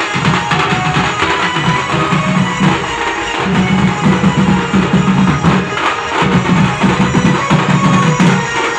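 A street drumming troupe playing loud, dense rhythms together on stick-beaten barrel drums and snare-type drums, with a deep low drone running through in long stretches.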